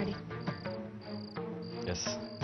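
Crickets chirping in short, even trills about every half second, over soft background music.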